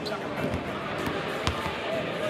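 Basketballs bouncing on a hardwood court, a few sharp knocks with the clearest about one and a half seconds in, over the chatter of voices in a large arena.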